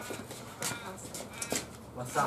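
Children's voices in short, indistinct snatches, with a few brief hissy sounds.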